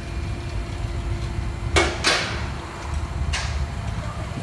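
A shop car lift's motor hums as it raises the car, then stops, followed by two sharp metallic clanks about two seconds in and a fainter one near three and a half seconds, with a steady low rumble of the shop underneath.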